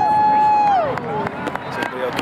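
A spectator's long, high held shout that falls away and stops about a second in, reacting to a goalmouth scramble. Scattered voices and a few sharp clicks follow.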